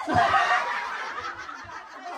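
A roomful of people bursting into laughter together, loudest at the outset and slowly dying down.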